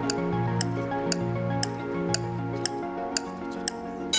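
Quiz-show countdown music with a clock-like tick about twice a second, marking the 20-second discussion time running down. The bass line drops out about two-thirds of the way through while the ticking goes on.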